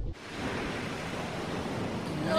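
Ocean surf washing onto a beach, a steady rush of breaking waves that starts just after the music cuts off.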